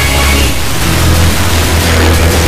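FM radio receiving a distant station by sporadic-E skip: steady static hiss over a weak signal, with low bass notes underneath.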